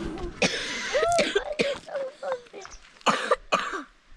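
A child coughing several times in short, harsh bursts, the loudest two close together near the end.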